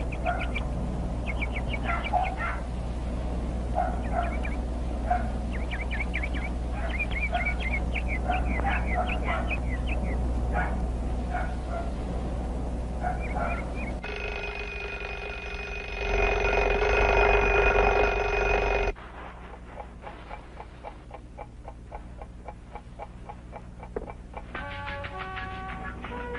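Birds chirping in short repeated calls, then a steady bell ringing that grows louder and cuts off abruptly, followed by faint quick ticking.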